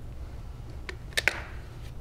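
Quiet indoor room hum with a few faint, short clicks about a second in.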